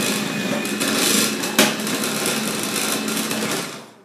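Electric grater's motor running under load as a whole red beet is pushed through its drum, a steady hum with shredding noise. A sharp knock about one and a half seconds in, and the motor winds down and stops near the end.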